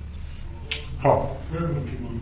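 Mostly a pause in a man's speech: a steady low hum, a single short click, then a brief spoken 'haan'.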